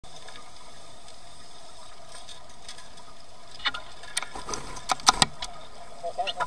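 Underwater recording with a steady hiss, then from about three and a half seconds a run of sharp knocks and rattles, loudest about five seconds in with a dull thud, as a tiger shark strikes the chained metal bait crate.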